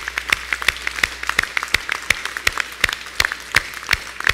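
A crowd applauding, with loud, irregular single hand claps standing out close to the microphone.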